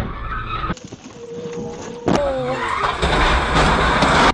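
Road crash caught on a car's dashcam. About two seconds in there is a sudden loud collision with a short squeal that slides down in pitch, followed by about two seconds of loud noise from the impact.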